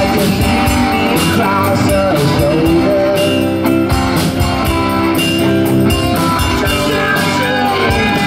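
Live rock band playing a song: electric guitars and electric bass over a steady drum-kit beat, with a sung lead vocal.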